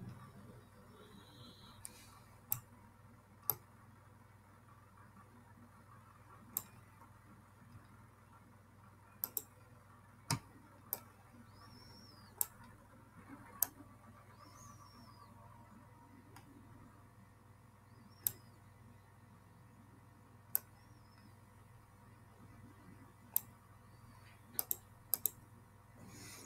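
Computer mouse clicking: a dozen or more sharp single clicks spaced irregularly a second or several apart, with a few quick double-clicks, over a faint steady low hum.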